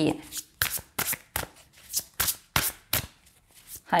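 A tarot deck being shuffled by hand: a quick, uneven run of short papery card slaps, about three a second.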